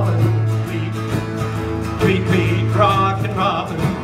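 Live acoustic country-style music with guitar over a steady low bass note, in an instrumental gap between sung lines; a short pitched melodic line comes in about three seconds in.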